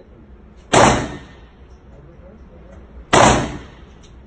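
.22LR handgun fired twice, about two and a half seconds apart, each shot a sharp crack that dies away in the reverberation of an indoor range.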